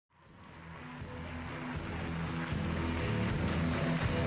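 Music fading in from silence: sustained held notes over a low bass line, growing steadily louder.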